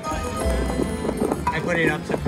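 Video slot machine playing its bonus-spin music and sound effects, with a quick run of clicks as the reels spin and land.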